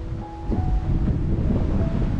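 Wind buffeting the microphone with a loud low rumble, under background music of a slow melody in held notes.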